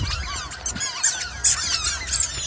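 Squeaky rubber chicken toys squealing in many short, high-pitched, overlapping squeaks as they are pressed underfoot, loudest about one and a half seconds in.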